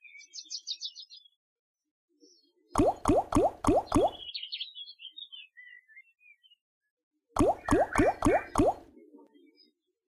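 Big Bass Amazon Xtreme slot game sound effects: two spins end with the reels stopping one after another, each landing with a short rising 'bloop', in quick runs of about five. Brief high twinkling jingles sound between the spins, one at the start and one after the first spin.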